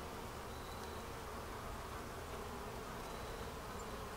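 Steady hum of honeybees around an open hive being fed.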